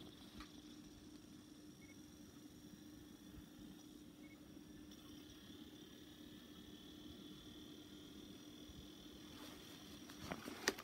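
Near silence: a faint steady hum and a thin high whine from a portable DVD player loading a disc. The whine grows a little stronger about halfway through.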